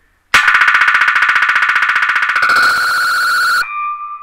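A split-second fragment of a struck cymbal caught in a Boss DD-6 digital delay pedal's loop and repeated as a rapid, harsh stutter, many repeats a second. About two and a half seconds in it thins into a steady high ringing tone, then cuts off suddenly, leaving faint tones for a moment.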